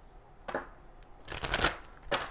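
Angel oracle cards being shuffled by hand: a short rustle about half a second in, then a longer, louder riffle of cards.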